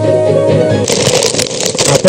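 Music: a held chord that breaks off just under a second in, followed by a crackly rustling noise.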